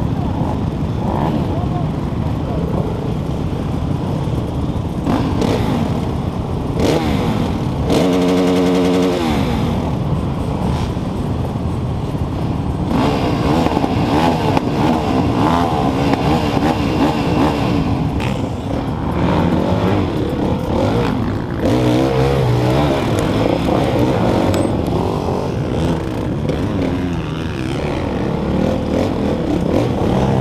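Many dirt bike engines running together, idling and revving unevenly. A brief steady horn-like tone sounds about eight seconds in.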